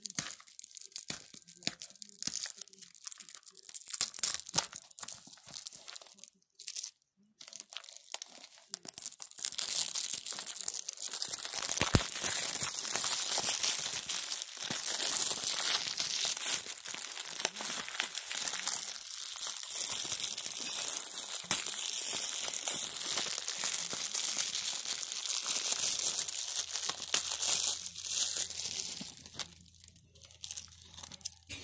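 Plastic shrink-wrap being torn and peeled off a DVD case. Scattered crackles and clicks come first, then from about ten seconds in a long stretch of dense, continuous crinkling and tearing of the film.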